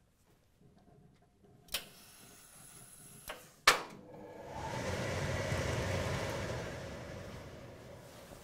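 Industrial pressing equipment during seam pressing: a few sharp clicks, then a rush of air about three seconds long that swells and fades.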